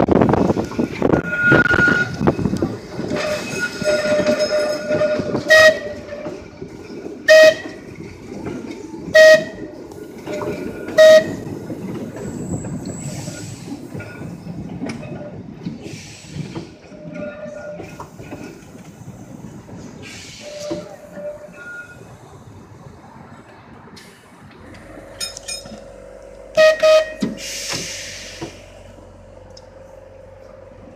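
Open-air 1934 English Electric Blackpool tram running on rails, its wheel and running rumble loudest in the first dozen seconds, then fading. Its horn sounds one longer blast, then four short blasts about two seconds apart, and two more quick blasts near the end over a steady hum.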